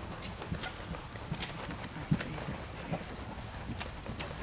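Horse's hooves trotting on sand arena footing: a run of soft, uneven thuds with a few sharper clicks.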